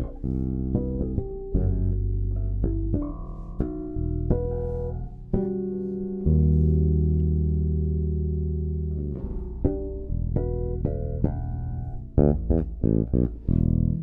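MTD 535 five-string electric bass played fingerstyle: a run of plucked notes, a chord held for about three seconds near the middle, then a quick flurry of short notes near the end, each note ringing clearly.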